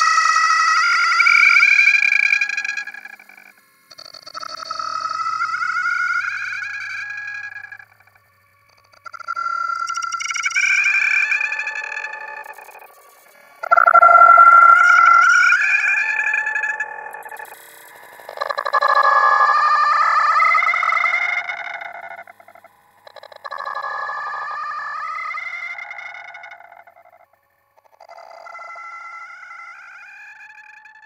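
An electronically processed, effects-laden sound clip repeated about seven times, each pass lasting three to four seconds with a rising pitch, separated by short gaps and growing quieter toward the end.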